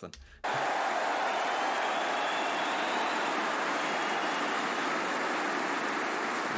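An audience applauding: a steady, even sound that starts suddenly about half a second in and holds level.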